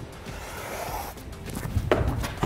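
Hands and climbing shoes scuffing and knocking on a plywood bouldering wall as a climber swings into a jump move, with a few sharp knocks near the end. Faint background music underneath.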